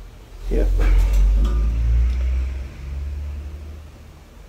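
A heavy silver-plated tray being turned over and handled close to the microphone: a low rumble with a few light clicks.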